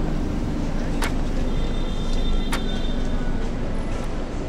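City street ambience, a steady hum of traffic and background noise, with two sharp clicks about a second and a half apart.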